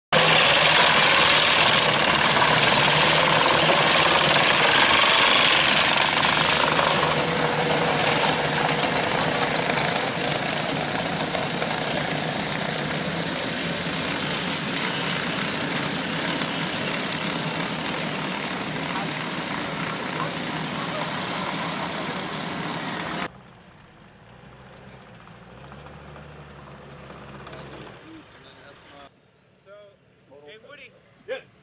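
Wiesel light tracked armoured vehicles driving, a loud steady mix of engine and track noise that slowly grows quieter as they move away. About 23 seconds in it cuts off abruptly, leaving a much quieter low hum.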